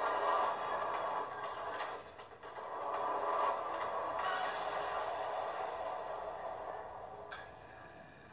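Television news ident: whooshing swells over theme music, heard from a TV speaker. It dips briefly about two seconds in and fades toward the end.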